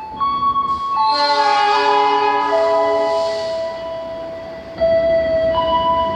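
A slow melody of long held electronic notes, each stepping to a new pitch every second or two, with a fuller, louder chord from about a second in to about three and a half seconds.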